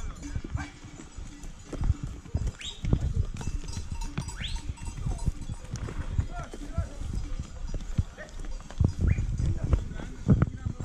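A migrating herd of sheep, goats and pack animals moving over a rocky trail: hooves knocking irregularly on stones, with a few short rising calls.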